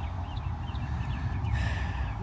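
Low, even rumble on a phone's microphone, with small birds chirping faintly in short quick chirps, several each second.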